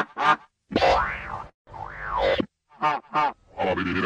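Pitched-down cartoon sound effects: two quick springy blips, then two boing-like tones that each slide up and back down, then two more quick blips near the end, with short silences between them.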